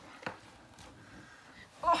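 Faint rustling and a couple of soft knocks as a toddler is lifted up, then a woman's short exclamation "Oh" near the end.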